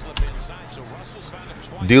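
A basketball bouncing on a hardwood arena floor as a player dribbles, heard as a few short knocks under low game-broadcast background.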